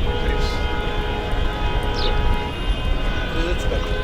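Many car horns held down together, sounding as one steady chord of tones from a long line of taxis honking in protest, over a low rumble.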